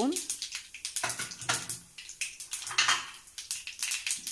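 Cumin seeds crackling and sizzling in hot oil in a pan as they temper, with a dense run of small pops over a steady hiss.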